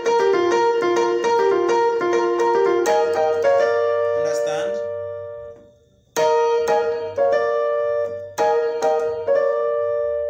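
Electronic keyboard on a piano voice playing a fast gospel praise-break lick: quick repeated notes over a held note, then a few sustained notes that die away to near silence around the middle. A second phrase of struck notes and chords follows.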